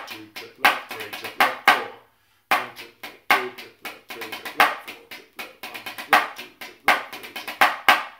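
Drumsticks on a drum practice pad playing a strathspey phrase-workout exercise: sixteenth notes laid over an eighth-note-triplet pulse, in quick runs of strokes with louder accents. There is a brief break about two seconds in.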